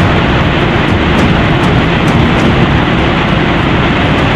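A swollen, muddy mountain river in flood rushing past, a loud, steady noise heavy in the low end.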